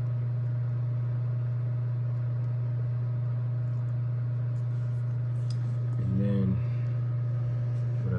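Electric space heater running with a steady low hum. A brief low voice sound comes about six seconds in.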